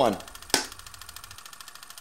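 A film clapperboard's sticks snapping shut once, about half a second in: a single sharp clack marking the take. A faint steady buzz lies underneath.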